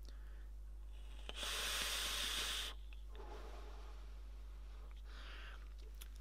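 A direct-lung draw on a Hellvape Drop Dead RDA: a breathy hiss of air pulled through its many small airflow holes, starting about a second in and lasting about a second and a half. This is followed by a fainter, longer exhale of vapour.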